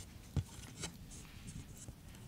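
Faint rustling and a few soft taps from small handheld whiteboard cards being handled and turned over.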